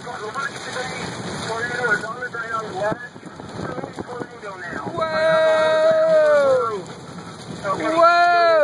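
Steady rain falling, with voices talking at first. Two long drawn-out vocal calls about five and eight seconds in, each held and then falling in pitch.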